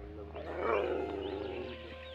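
Dog howling once: a drawn-out call that rises and then slowly falls away, about a second long.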